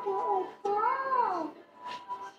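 Two drawn-out, wavering vocal calls, the second rising and then falling in pitch.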